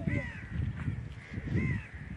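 A crow calls twice, about a second and a half apart, each a short arched caw, over a low rumbling noise.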